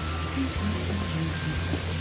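Background music with sustained low notes and a short melody line.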